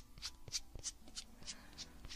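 Faint, crisp, close-miked clicks about three to four a second, a light ASMR trigger sound of an object being tapped or scratched.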